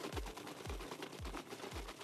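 Copper sulfate plating solution sloshing inside a plastic bottle as it is shaken by hand to mix, with about three dull thuds a second as the liquid hits the bottle's ends.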